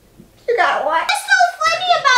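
Speech only: after a brief pause, a high-pitched voice starts talking about half a second in.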